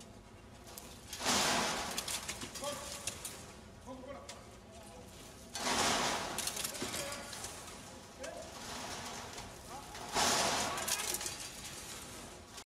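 Voices of a crew of construction workers, with three loud rushes of noise about four and a half seconds apart, each fading over a second or two.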